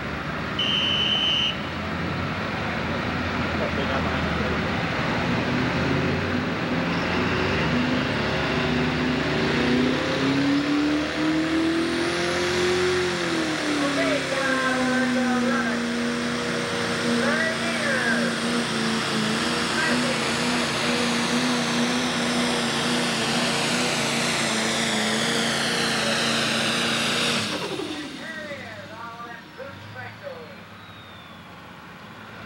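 Turbocharged diesel engine of a Pro Stock pulling tractor at full power as it pulls a weight-transfer sled, with a high turbo whine rising over the engine. The engine pitch climbs, drops, then holds a steady drone, and the sound cuts off suddenly near the end.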